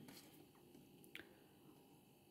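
Near silence: room tone, with one faint click about a second in from oracle cards being handled and moved in the hands.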